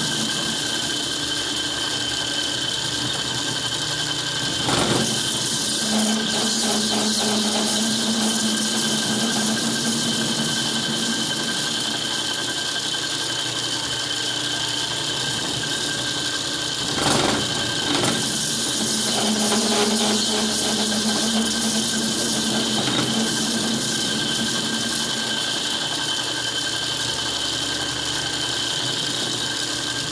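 Metal lathe running with its chuck spinning as a hand-fed cutting tool turns down a metal workpiece: a steady high whine, with a low hum that comes and goes and brief knocks about five seconds in and again near seventeen seconds.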